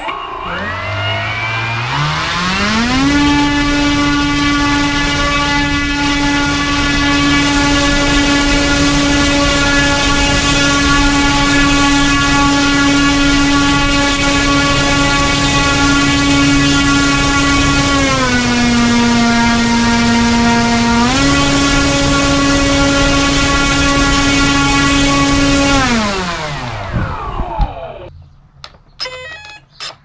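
Turnigy SK4250 650KV brushless outrunner motor turning an 11x7 propeller at full throttle on a 4S battery, about 8,500 rpm: it spins up over the first few seconds to a steady whine, dips briefly in pitch about two-thirds through, comes back up, then winds down near the end.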